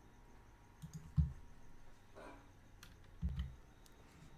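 Computer mouse clicks and keyboard key presses: a few short sharp clicks, with a dull thump about a second in and another just past three seconds.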